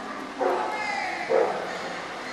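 A dog barking twice, about a second apart, the second bark louder, over the murmur of a crowd in a large hall.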